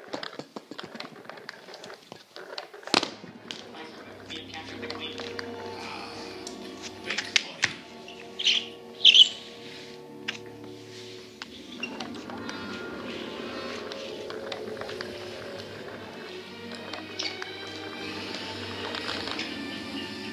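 Film soundtrack playing from a television in a small room: music with long held notes, with some speech and a few sharp sound effects mixed in, one loud high burst about halfway through.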